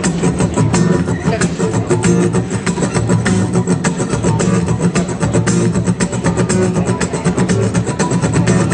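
Live blues music: an instrumental passage led by guitar over a steady beat.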